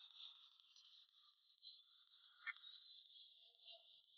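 Near silence with a steady faint high hiss and a few faint snips of hair-cutting scissors closing on a lock of hair, the clearest about two and a half seconds in.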